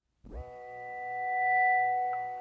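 Opening of an alternative rock track from a cassette recording: a sustained ringing tone with several steady pitches comes in from silence about a quarter second in, swells, and begins to fade.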